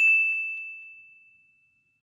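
A single bright, bell-like ding on one high tone, fading out over about a second and a half, with two faint ticks just after the strike.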